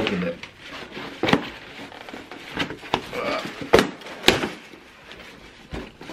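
Cardboard shipping box being worked open by hand: cardboard scraping and rustling, with several sharp knocks, the loudest two about four seconds in.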